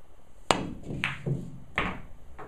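Pool shot: the cue tip strikes the cue ball with a sharp click, the loudest sound, and about half a second later the cue ball clacks into the object ball. A low knock and another sharp ball click follow.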